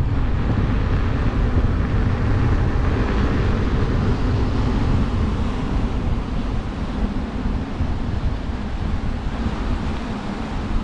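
Wind rushing over the camera microphone of a rider moving on an electric unicycle: a steady low rumble with a hiss on top, easing slightly in the second half.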